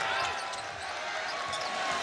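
Basketball being dribbled on a hardwood court, with sneakers squeaking, over steady arena crowd noise.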